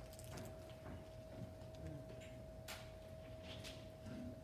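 Quiet room noise with a faint steady whine and scattered small clicks and taps, one sharper click about two-thirds of the way through, as microphones and equipment are handled.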